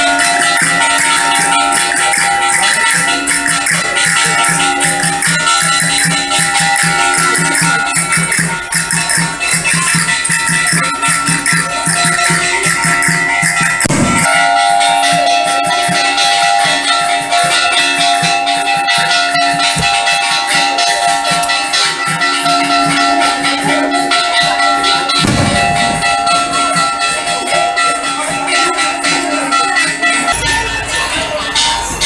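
Asturian bagpipe (gaita) playing a tune over its steady drone, with a drum (tambor) rattling along beneath it.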